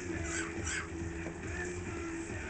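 A parakeet giving two short, harsh squawks in quick succession near the start.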